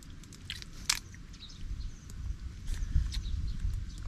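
Grilled shellfish being eaten by hand: light clicks of shells being handled and pried open, with chewing. There is one sharper crack about a second in, and a low rumble underneath.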